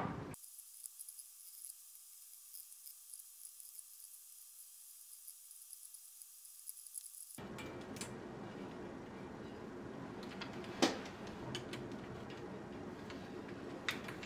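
After several seconds of near silence, hands working adhesive rim tape into a bicycle rim bed make a faint steady rubbing, with a few sharp clicks, the loudest about eleven seconds in. A short knock dies away at the very start.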